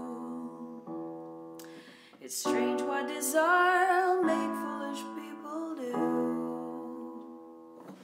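Sustained piano chords in a minor key, a new chord struck every second or two, with a woman singing a short phrase with vibrato over them about three seconds in. The sound fades away near the end.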